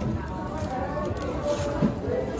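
Background chatter of voices in a busy restaurant dining room, with no clear words.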